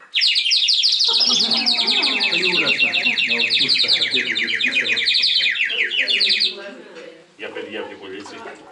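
Clay bird whistle blown in a fast, warbling, birdsong-like trill that stops about six and a half seconds in, with voices talking underneath.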